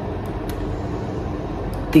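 Steady hum and hiss of a room air conditioner running, with a few faint ticks.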